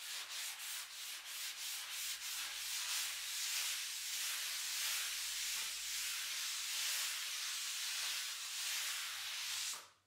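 Wet sponge scrubbed over a blackboard in quick repeated strokes, wiping chalk away. It stops suddenly near the end.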